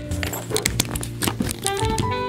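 Background guitar music, with a quick run of small clicks and knocks as a tripod is handled.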